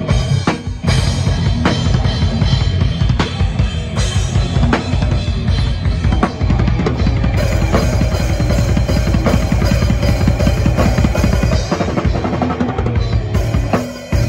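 Live rock drum kit played fast and loud: a rapid, even run of bass drum strokes driven by the pedals, with snare hits and cymbals over it.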